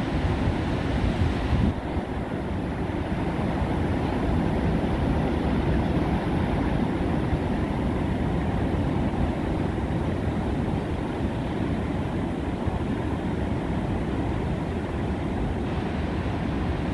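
Steady wash of breaking surf mixed with wind buffeting the microphone, heaviest in the low end.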